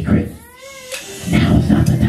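A man's voice through a microphone in drawn-out, sung-sounding phrases rather than plain speech, with a high gliding vocal cry about half a second in.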